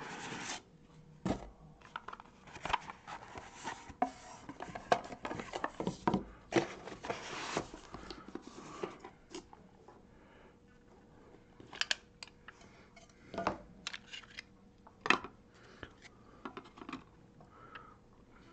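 Hands opening a Leaf Metal Draft baseball card box and handling the plastic card holder inside: dense rustling and scraping of cardboard and plastic with many sharp clicks, thinning to a few single clicks in the second half.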